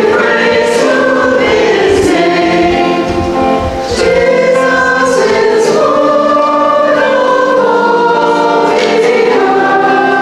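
A choir singing a hymn in held notes that move from one to the next without a break.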